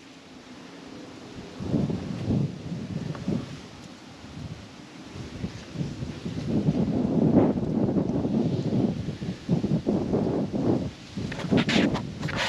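Wind buffeting the microphone, with rustling and a few knocks near the end.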